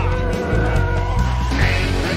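Rock intro theme music with a steady heavy bass beat and a long held note.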